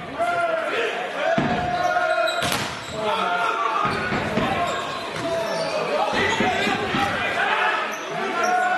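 Volleyball rally in a reverberant sports hall: a few sharp smacks of the ball, about a second apart early on, over players' shouts and crowd voices.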